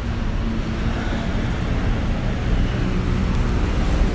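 Steady low rumble of motor-vehicle engines.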